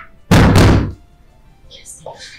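Heavy knocking on a door: one loud, deep blow about a third of a second in, lasting about half a second.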